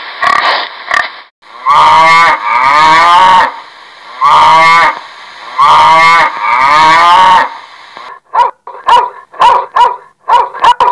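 Pig grunting briefly, then a domestic cow mooing in several long, drawn-out calls. Near the end a dog starts barking in short, quick barks.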